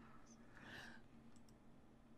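Near silence: faint room tone on a microphone, with a few faint clicks and a faint trace of a voice.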